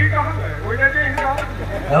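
A low, steady droning tone that fades slowly, with faint voices over it.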